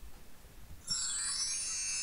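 A short, high, shimmering chime-like sound effect made of many steady bright tones, coming in about a second in and lasting about a second and a half.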